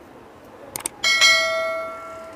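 Subscribe-button animation sound effect: two quick mouse clicks, then a bright notification-bell ding about a second in that rings on and fades away.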